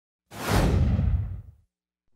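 Whoosh sound effect for an animated logo intro: a rush of noise over a deep rumble that starts a moment in. The highs die away first and it is all gone by about a second and a half.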